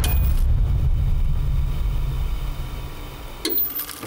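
Title-card sound effect: a sharp hit opens a deep rumbling drone that slowly fades over about three seconds, and a short whoosh comes near the end.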